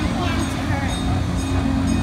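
A steady low machine rumble, with voices in the background.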